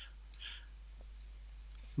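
A sharp computer mouse click about a third of a second in and a fainter tick about a second in, over a low steady hum.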